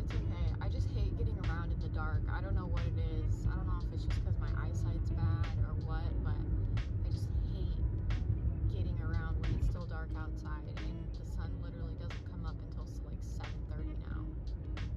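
Steady low road rumble inside a moving car's cabin, with a song with singing playing over it.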